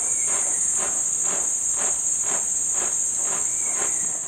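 A colony of warrior wasps (Synoeca) drumming in unison on their paper nest, a rhythmic rasping beat about twice a second. It is their warning display when the nest is threatened. A steady high-pitched whine runs behind it.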